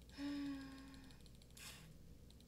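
A woman's short, steady-pitched hum ("mmm") lasting just under a second, followed about half a second later by a quick breath.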